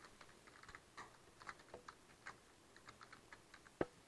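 Faint typing on a computer keyboard, irregular keystrokes, with one sharper, louder click near the end.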